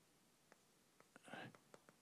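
Faint chalk writing on a blackboard: several sharp taps of the chalk and a short scraping stroke about a second and a half in.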